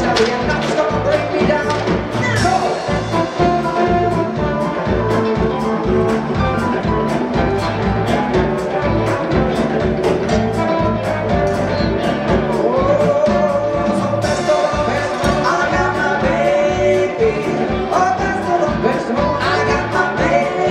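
Live band playing upbeat music with a steady drum beat, with a voice singing over it.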